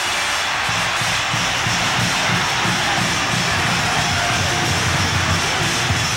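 A large arena crowd cheering in a steady roar after the game-winning final buzzer, with music that has a low, rhythmic beat joining underneath about a second in.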